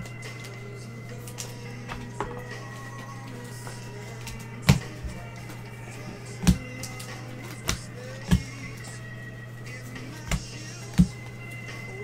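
Faint background music over a steady low hum, with about six sharp knocks and taps as a trading-card pack is opened and the cards are handled on a table.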